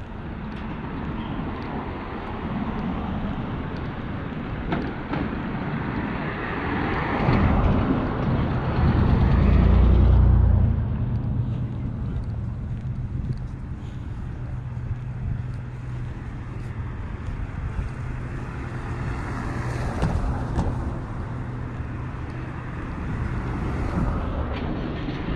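Street traffic heard with wind buffeting the microphone; a vehicle passes close by, loudest about ten seconds in, and a low engine hum carries on for several seconds after.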